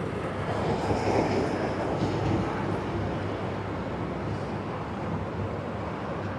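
Steady broad rumble of an airplane flying over, swelling slightly about a second in and then holding.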